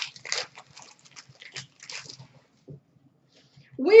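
Hockey trading cards handled and sorted by hand: short rustles and light clicks in the first two seconds, then a brief lull.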